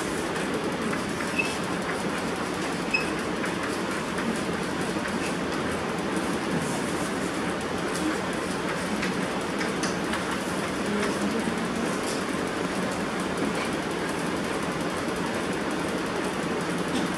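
Steady background noise of the room, with a few faint taps and scrapes of chalk and a board duster on a blackboard.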